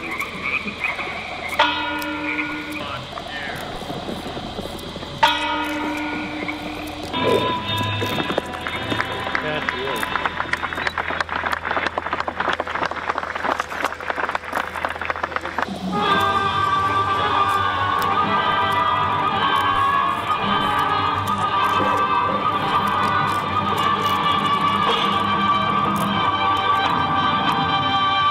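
Frogs croaking in a dense chorus, mixed with held musical tones and distant voices. From about sixteen seconds in, steady music with sustained chords takes over.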